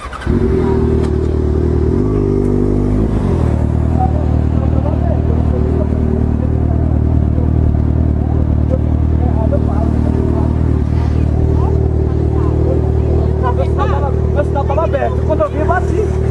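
Motorcycle engine running steadily as the bike is ridden, with a brief change in its note about two to three seconds in.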